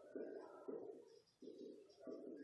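Faint cooing of a bird, a few short low notes repeated with brief gaps between them.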